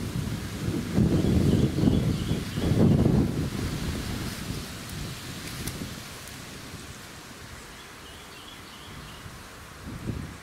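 Low, rumbling buffeting of wind on the camera microphone, loudest for about the first three and a half seconds, then settling to a quieter steady hiss.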